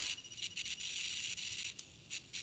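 Faint steady high hiss with a few soft ticks: background noise on a video-call line.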